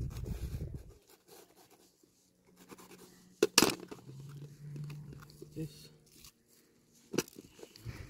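Serrated kitchen knife cutting through a long red pepper on a plastic tray, with crunching of the flesh. Two sharp knocks of the knife on the tray, one about three and a half seconds in and another near the end.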